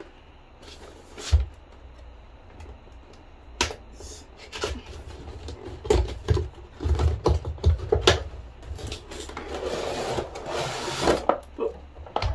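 Cardboard product box being opened and handled: scattered knocks and thumps as the flaps are worked open, then a longer rustle of packaging about ten seconds in.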